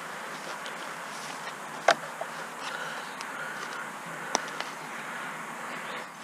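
Hand trowel digging through turf and soil, with a sharp click about two seconds in and a smaller one after four seconds, over a steady background hiss.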